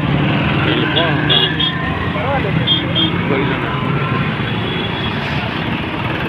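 Busy street traffic of motor scooters and motorbikes with their engines running in a steady low hum, with people's voices and a few short high beeps mixed in.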